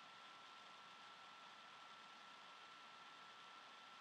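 Near silence: faint steady hiss of room tone, with a thin high hum.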